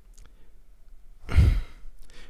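A man sighs once, a heavy exhale into a close microphone about a second in, after a moment of near quiet.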